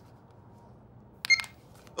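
A cartoon mobile phone gives one short electronic beep about a second in, with faint blips after it, against near silence.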